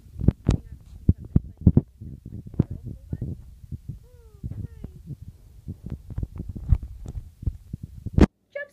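Irregular knocks, thumps and rubbing of handling noise from a finger pressed over the camera lens, shifting against the phone near its microphone.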